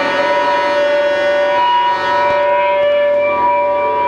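Live rock band holding a sustained, droning chord: several steady pitches ring together without change, with a few faint drum taps.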